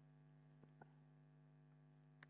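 Near silence: a steady low electrical hum, with two faint clicks a little after halfway.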